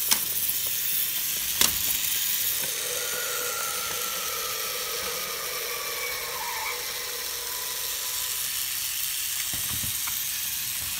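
Geotrax remote-control toy trains running on plastic track: a steady, high whirring hiss of small motors and wheels. Two sharp clicks come in the first two seconds, and a faint tone slowly falls in pitch for a few seconds in the middle.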